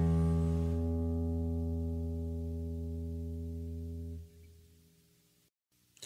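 A guitar's open sixth string, low E, played as a tuning reference note, rings on and slowly fades. It is stopped about four seconds in, leaving near silence.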